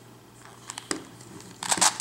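Plastic Circle Crystal Pyraminx twisty puzzle being turned by hand: a few light clicks about a second in, then a short scraping rattle of its pieces as a face is turned near the end.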